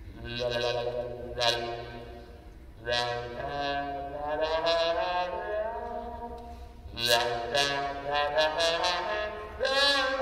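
Trombone played with a plunger mute held over the bell, giving wah-like, voice-like phrases. The notes bend and slide in pitch, and the phrases come in short groups with brief dips in between.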